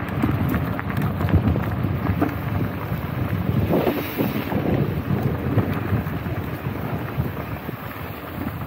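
Wind buffeting the camera's microphone and bicycle tyres rolling over a gravel trail: a steady low rumble sprinkled with small crackles, with a brief louder rustle about halfway through.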